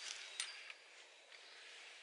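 A long hand peat auger being twisted in the soil to cut the core: mostly faint, with one sharp click about half a second in.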